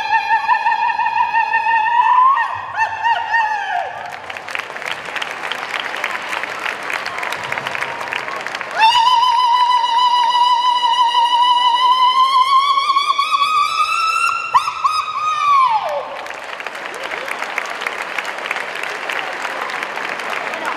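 Two long, high irrintzi, the traditional Basque shout, each held on one piercing note. The second starts about nine seconds in, climbs slowly and ends in a falling, wavering trail. A crowd applauds and cheers between the two cries and after them.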